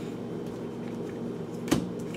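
Low steady room hum, with one short knock about three-quarters of the way through, from tarot cards being handled on the table.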